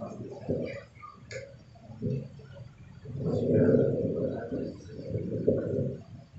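Low, muffled voice-like murmuring with a few soft clicks in a small room. The murmur is strongest in the second half.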